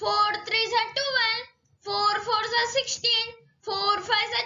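A child's voice chanting the four times table in a sing-song, two or three short phrases with brief pauses between them: "four threes are twelve, four fours are sixteen".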